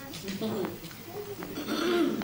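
Indistinct talking: voices speaking at some distance from the microphone, too unclear to make out words.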